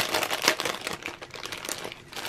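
Clear plastic bag crinkling as hands handle it and work a lace item out through its underside. The crackle is dense in the first second and thins out near the end.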